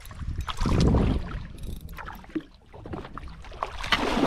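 Water splashing and sloshing at the side of a boat as a hooked fish thrashes at the surface and is gaffed, with a few knocks. The loudest surge comes about a second in, and a sharp splash comes at the very end.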